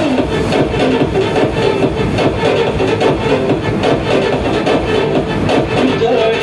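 Electronic DJ remix music with a steady, driving drum beat. The melody drops out with a falling glide just at the start, leaving mostly beat, and comes back near the end.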